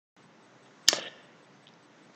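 A single sharp click about a second in, dying away quickly, over faint background hiss.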